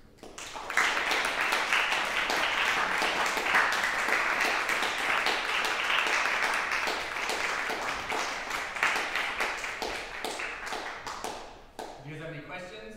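Audience applauding at the end of a solo classical guitar piece: the clapping starts within the first second, holds steady, and thins out and stops near the end.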